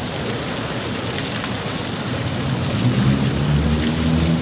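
Steady rushing of the fountain's gas flames burning over water. About halfway through, the low hum of a vehicle engine rises under it and grows louder.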